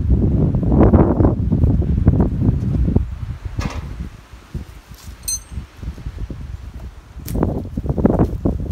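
Footsteps rustling and crunching through dry leaves and pine needles, loudest in the first three seconds and then lighter and scattered. A brief high clink comes about five seconds in.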